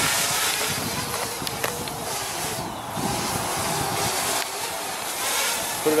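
Quadcopter drone flying overhead, its propellers giving a faint steady whir under a hiss of wind on the microphone.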